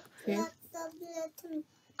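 Only a voice: soft, drawn-out hesitation sounds between words.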